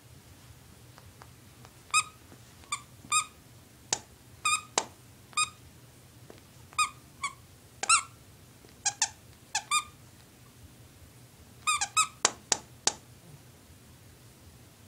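Squeaker inside a plush ladybug dog toy squeaking over and over as a Shih Tzu bites and chews it: short, high squeaks in irregular groups, starting about two seconds in, with a quick run of squeaks near the end.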